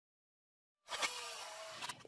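Dead silence for about the first second, then faint room tone with a couple of light clicks as the interview's sound cuts in.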